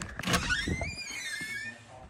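A door creaking as it swings open: a short knock, then a high hinge squeal that rises and falls over about a second and a half.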